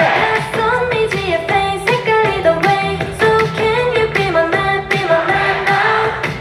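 K-pop girl-group song playing loud: female vocals singing a melody over a pop backing track with a steady beat.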